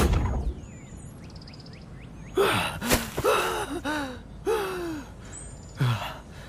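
A man gasping and groaning in pain and exhaustion, a run of four or five short breathy cries that fall in pitch, starting about two seconds in. Birds chirp faintly before and between them.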